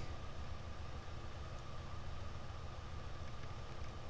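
Bedini energizer pulse motor running, its magnet rotor spinning past pulsed coils: a steady low hum with fast, even pulsing and a faint steady high tone.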